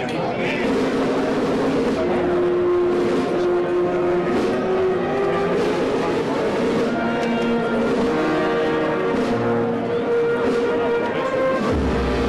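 Wind band playing a slow processional march, with long held notes in several voices over a low bass line.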